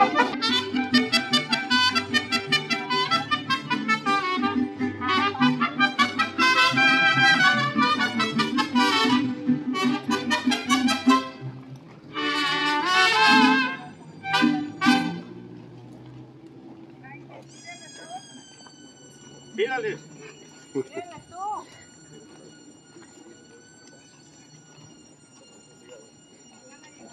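Mariachi band playing a melody while walking, the music breaking off about fifteen seconds in. After that only a faint steady high-pitched tone and a few short chirps remain.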